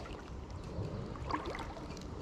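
Faint sloshing of creek water around a wading angler, with a low rumble and a few small ticks.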